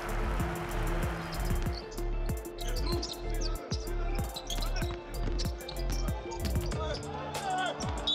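Steady backing music over game sound of a basketball bouncing on a hardwood court, with short high squeaks from shoes during play.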